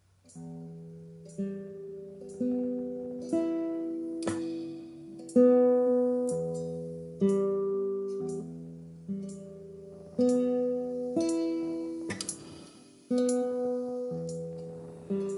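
Nylon-string classical guitar played fingerstyle as an arpeggio exercise: single plucked notes of broken chords, each ringing and fading, a new pluck about every second, starting about half a second in.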